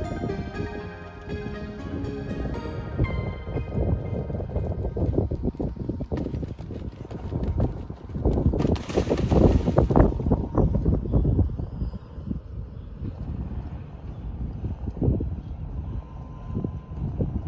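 Background music that fades away over the first few seconds, then wind buffeting the microphone, loudest in a gust about nine to ten seconds in.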